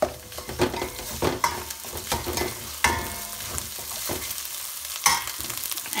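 Onions and green chillies sizzling in hot oil in a stainless steel kadai while a steel spoon scrapes and clinks against the pan as they are stirred, with a few sharper clanks, the loudest about five seconds in.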